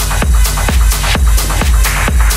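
Electronic dance music in a continuous DJ mix: a steady, even beat with heavy bass and bright high percussion.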